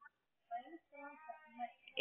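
A faint, drawn-out voice on the phone line, its pitch held and slightly wavering for about a second and a half.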